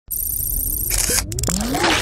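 Sound-designed intro-logo effects: a low rumble under a high fluttering buzz, then sharp clicks about a second in and electronic tones gliding up and down.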